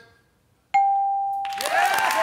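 Family Feud board's answer-reveal ding: a single bell-like tone about three-quarters of a second in, ringing out over about a second, signalling that the answer scored on the board. Studio audience applause and cheering break in just after it.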